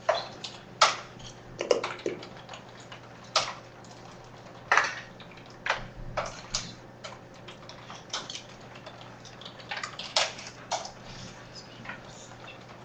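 Irregular clicks of a computer mouse as a PDF is paged through, about fifteen sharp clicks spaced unevenly, over a faint steady room hum.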